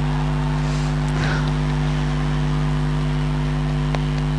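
Steady low electrical buzzing hum of several fixed tones, unchanging in pitch and level. There is a faint brief rustle about a second in and a click near the end.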